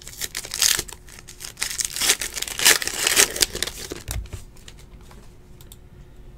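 Foil wrapper of a Donruss Optic basketball card pack torn open and crinkled by hand, in crackly bursts that are loudest two to three seconds in. A soft thump follows about four seconds in, then quieter handling.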